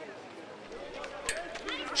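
Faint open-air ambience at a football pitch, with distant voices of players and spectators calling that grow a little about a second in.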